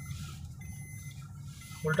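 Car engine and road noise heard inside the cabin as a steady low rumble, with faint steady high-pitched electronic tones over it.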